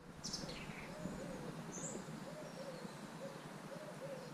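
Outdoor birdsong: a pigeon cooing over and over in short arched calls, with a few high chirps from small birds near the start and about two seconds in, over a steady low background hum.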